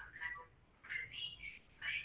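Faint, indistinct speech, close to a whisper, heard over a video call, with two short near-silent gaps.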